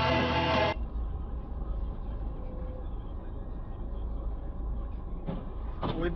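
Rock music cuts off abruptly under a second in. It gives way to the low, steady rumble of a stopped car's cabin, heard through a dashcam microphone.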